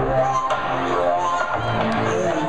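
Live concert music played loud through a PA system: a deep, droning bass note under a singing voice.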